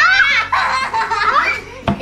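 Young girls laughing and squealing, several voices at once, over background music, with one sharp click near the end.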